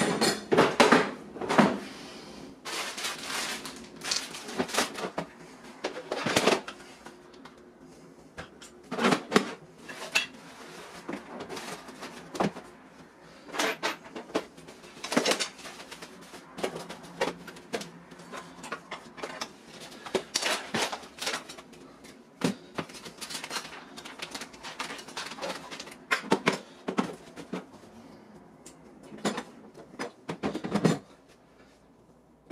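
Tools and packaged items being put into a black plastic Husky Connect toolbox: irregular knocks and clatters of hard plastic, with rustling of packaging in between. The louder knocks cluster just before the end, when the boxes are stacked.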